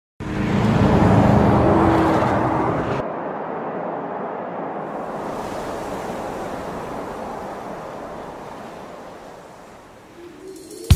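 A loud rush of noise with a low, engine-like drone under it, cut off abruptly about three seconds in. It is followed by a steady wind-like hiss that slowly fades away.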